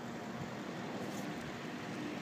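Steady background hiss with a faint low, even hum, like a motor running somewhere off.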